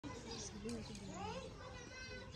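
Faint voices of children talking and playing in the background.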